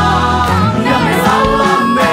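A choir and a lead voice sing a Christian worship song in unison, in Finnish, over a steady band accompaniment. A long held note ends the line.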